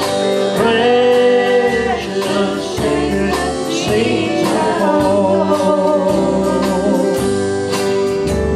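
Live country gospel music: singing over electric guitar and a backing band, with a steady beat.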